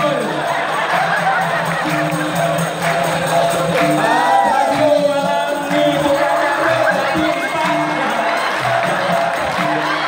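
Live dikir barat performance through a PA: a lead singer's voice on the microphone over the music, with audience crowd noise and cheering.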